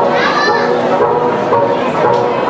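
Many voices singing a Tibetan gorshey circle-dance song together, the notes held steady, with a high rising-and-falling shout about half a second in.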